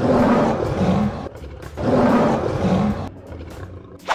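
Two lion roars, each about a second long, the second beginning about two seconds in.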